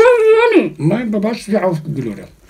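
A muffled, garbled voice from someone talking with a mouth stuffed full of marshmallows, so the words come out unintelligible. It opens with a drawn-out higher sound, then turns to lower mumbling.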